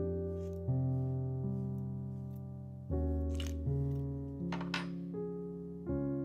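Solo piano music playing slow chords that change about once a second. Twice, about three and a half and about five seconds in, a short crisp snip of scissors trimming the velvet strip comes through under the music.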